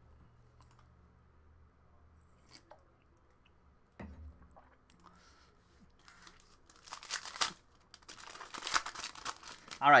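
Foil wrapper of a Panini Prizm World Cup trading-card pack crinkling as it is picked up and torn open, starting about six seconds in and growing louder and denser toward the end. A single short knock sounds about four seconds in.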